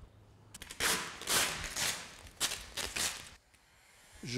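Vinyl wrap film being pulled away from a car body after trimming, crackling in four or five loud surges, then stopping shortly before the end.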